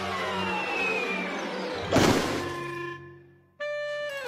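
Cartoon sound effects over an orchestral score: a descending whistling glide, then a loud crash about two seconds in that dies away. A held musical chord follows near the end.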